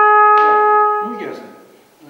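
Trumpet playing one long, loud held note, tongued again about half a second in, then stopping about a second in and dying away in the room's echo.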